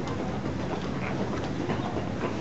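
Steady outdoor ambience of a busy pedestrian street: an even rumbling noise from passers-by and the surroundings, with no clear voice standing out.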